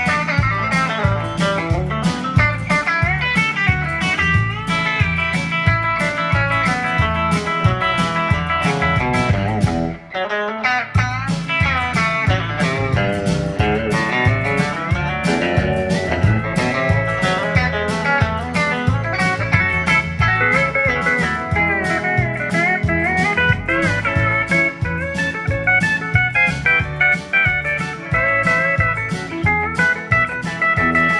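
Live instrumental country music: a Telecaster-style electric guitar and a pedal steel guitar playing together over a steady beat, with a brief dip about ten seconds in.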